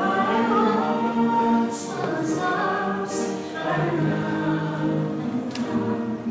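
A church choir singing a hymn, several voices holding long sustained notes that change pitch every second or so. A single sharp click sounds near the end.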